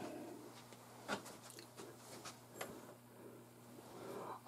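Faint clicks and light taps of metal rifle parts being handled as an SVT-40's gas system is reassembled, the two clearest clicks about a second in and a little past halfway, over a faint steady low hum.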